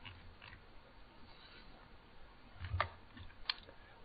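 Quiet room tone, broken by a man's short grunt-like "huh" near the end and a single sharp click just after it.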